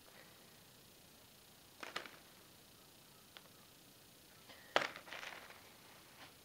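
Faint clicks and rustles of coal and coke lumps being picked through by hand on plastic sheeting: a short burst about two seconds in, a single tick, then a louder run of clicking and rustling just before the end.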